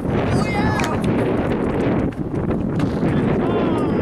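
Wind rumbling on the microphone during outdoor soccer training, over players' distant shouts and calls and the thuds of soccer balls being kicked.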